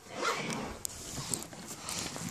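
Fabric rustling and scraping as a soft camo tackle bag is handled close to the phone's microphone, with a sharp click a little under a second in.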